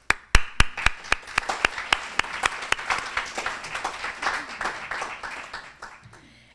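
Audience applauding. A few loud, evenly spaced claps stand out at first, about four a second, over many hands clapping, and the applause dies away near the end.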